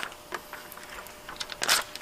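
Faint rustling and light ticks of dark window tint film being pressed and smoothed by hand onto a wet plastic window pane, with a short hiss near the end.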